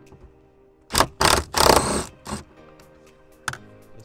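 Small cordless impact driver, with a 13 mm socket on a wobble extension, hammering a seat-mount bolt loose in three quick bursts about a second in, followed by one short burst.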